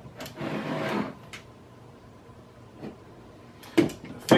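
Scraping and light clicks of a parting board being worked loose by hand from a fiberglass canopy mold, with a sharp knock near the end.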